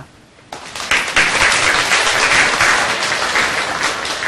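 Audience applause that starts about half a second in, builds within a second, then holds steady as dense clapping.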